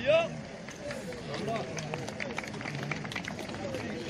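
Men's voices outdoors: one loud, drawn-out call right at the start, then several voices talking and calling over one another, with scattered light clicks.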